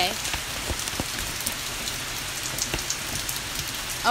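Steady rain falling outdoors: an even hiss, with a few sharp ticks scattered through it.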